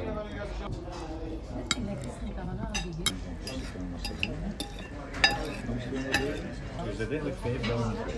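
Metal cutlery clinking and scraping against china plates in a scatter of sharp clinks, the loudest about five seconds in, over a murmur of voices.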